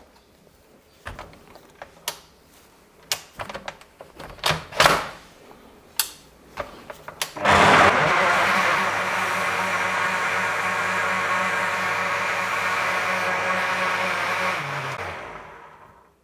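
A Bosch food processor's blender jug runs steadily for about seven seconds, blending raw eggs and bananas into a liquid batter, then spins down. Before it starts there are a few scattered knocks and clicks as the jug is handled and the control knob is turned.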